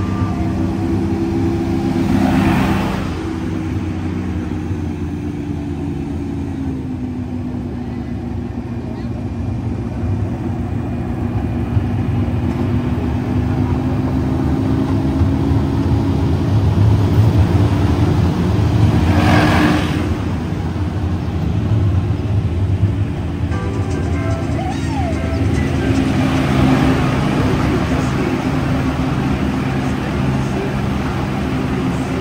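Casey Jr. Circus Train ride train running along its narrow-gauge track with a steady low rumble, music and people's voices mixed in. A brief hiss comes twice, about two seconds in and again about twenty seconds in.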